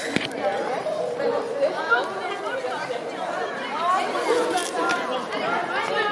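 Indistinct chatter: several voices talking over one another, with no clear words.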